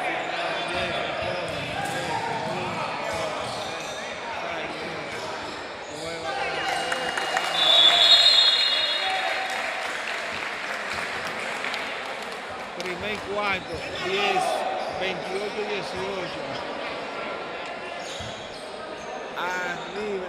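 Basketball game on an indoor court: the ball bouncing and players' shoes on the floor, with players and spectators calling out. A shrill referee's whistle about eight seconds in is the loudest sound.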